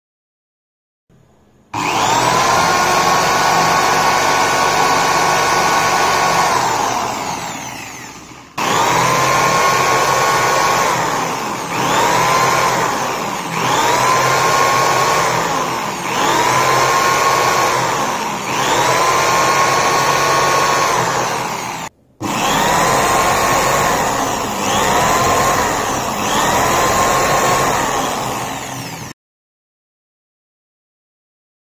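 An electric drill spins a converted mixer universal motor as a generator, with the trigger pulled in repeated bursts. There is one long run of about six seconds, then a string of shorter runs of a second or two each. Each run opens with a rising whine that levels off.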